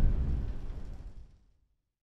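The tail of an intro sting's deep boom, its low rumble dying away over about a second, then silence.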